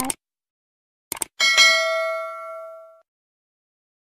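Subscribe-button sound effect: a quick double mouse click about a second in, then a bell ding that rings out and fades away over about a second and a half.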